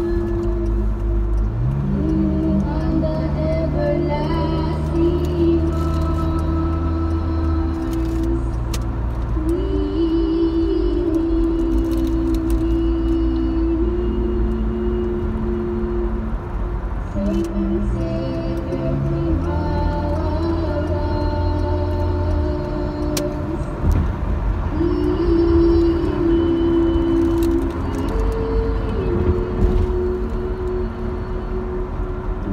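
Slow hymn music with long held chords and a sustained bass line, changing notes every second or two, over steady car road noise.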